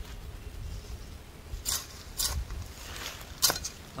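A hoe blade scraping and pulling loose soil up around the base of a plant, in about four short scrapes from a little before halfway through.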